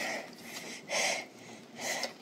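Two short, breathy puffs of a person breathing, about a second apart.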